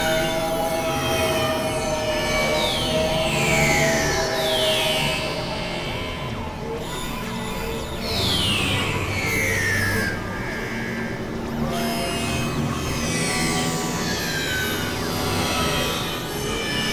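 Layered experimental electronic music: a held tone in the first few seconds under high sweeps that fall in pitch, repeating every few seconds over a dense, noisy bed.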